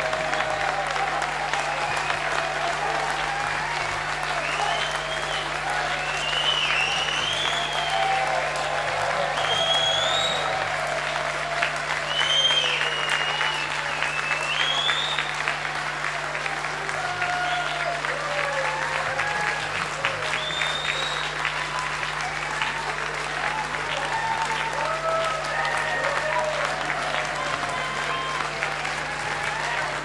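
A large audience applauding, a dense continuous clapping with whistles and cheering voices rising through it, the whistling mostly in the first half.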